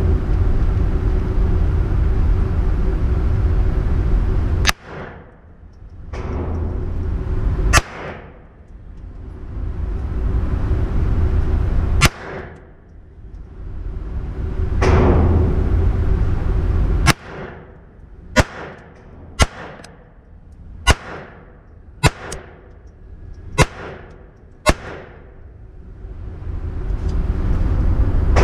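Ruger Mark IV Tactical .22 LR pistol fired ten times, each shot a sharp crack. The first four come a few seconds apart, then six follow about a second apart. A steady low rumble runs underneath and drops away briefly after each shot.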